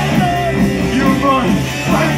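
Live punk rock band playing loudly: electric guitars, drums and organ, in a stretch between sung lines.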